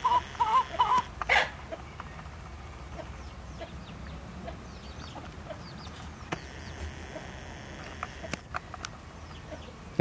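Chickens clucking in the background during the first second or so, then a steady low rumble with faint, scattered high chirps.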